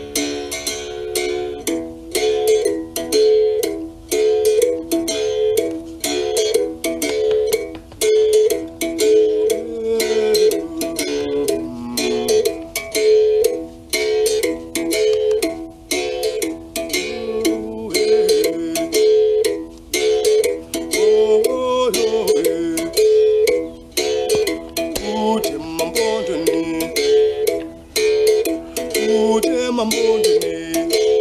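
Uhadi, the Xhosa calabash-resonated musical bow, played by striking its wire string with a stick: a steady run of sharp strikes, about three a second, with the ringing notes moving back and forth between two pitches.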